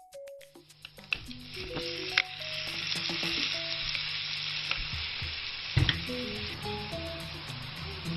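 Onion, ginger and garlic sizzling in hot olive oil in a frying pan, starting about half a second in, with a few sharp knocks of the stirring utensil against the pan, the loudest near six seconds in. A simple melody of short notes plays over it.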